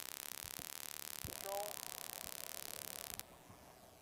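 Faint steady electronic hiss of a dead aircraft intercom and headset audio line, which cuts off suddenly about three seconds in. A brief faint voice sound comes partway through.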